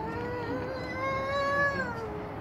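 A young child's long, drawn-out vocal note with no words, held steady for nearly two seconds and dropping in pitch as it ends.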